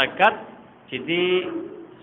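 A man speaking: a brief word at the start, then one long drawn-out syllable held for about a second.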